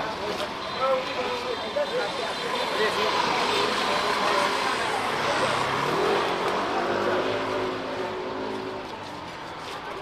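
A car driving past on the street. Its engine and tyre noise grows louder through the middle and fades away near the end, with people's voices alongside.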